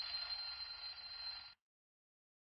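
Twin-bell alarm clock ringing, a steady high, rattling ring that cuts off suddenly about one and a half seconds in.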